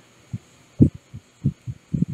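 Marker strokes on a wall-mounted whiteboard while a word is being written: a series of about six soft, low knocks, irregularly spaced.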